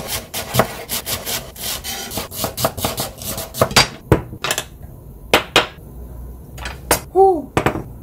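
Chef's knife chopping Korean chives on a bamboo cutting board, a rapid run of blade strikes on the wood for about the first four seconds. Then a few separate knocks follow, and a short voiced exclamation comes near the end.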